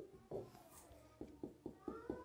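Faint strokes of a dry-erase marker on a whiteboard: a run of short, quick ticks in the second half, with a brief rising-then-falling squeak of the marker tip near the end.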